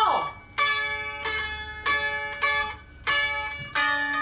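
Baglamas, the small Greek long-necked lute, plucked with a pick. About seven single notes come at a slow, uneven pace, each left to ring and die away: a learner's practice from sheet music.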